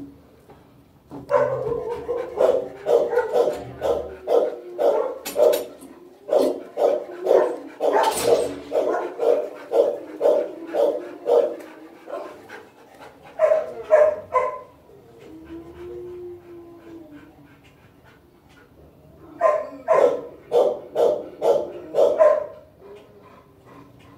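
A dog barking repeatedly, about two to three barks a second, in bouts: a long run of about ten seconds, a short burst past the middle, and another run of about three seconds near the end.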